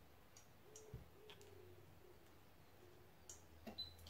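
Near silence: room tone with a few faint, light clicks and taps.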